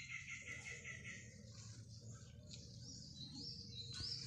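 Birds calling faintly: a quick run of chirps at the start, then several short, high whistled notes in the second half.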